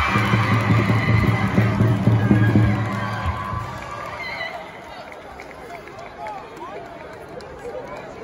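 Basketball arena crowd cheering and shouting, with a low steady tone underneath for the first three seconds or so, then settling into quieter crowd chatter.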